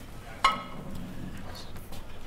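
A ceramic dinner plate set down on the table with a single sharp clink about half a second in, ringing briefly.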